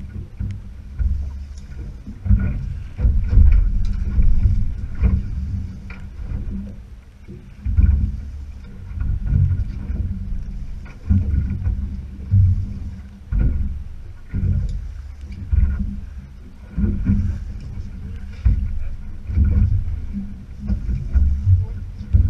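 Wind and sea noise on a small open boat: irregular low rumbling surges of wind on the microphone and water against the hull, rising and falling every second or two.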